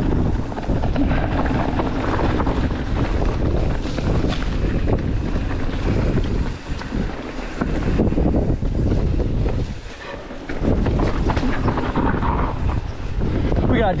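Wind buffeting the microphone over the rumble and rattle of a mountain bike's tyres rolling fast down a rough dirt singletrack. The noise eases briefly about halfway through and again about ten seconds in.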